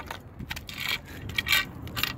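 A PVC pipe sleeve being handled on the end of a beach dolly's handle tube: a short scrape, then a few quick plastic clicks and knocks.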